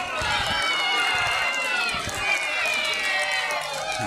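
Roadside crowd cheering and shouting encouragement, many voices overlapping in long held calls.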